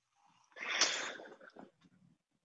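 A person's short, breathy burst of noise through a video-call microphone, starting about half a second in and fading within a second.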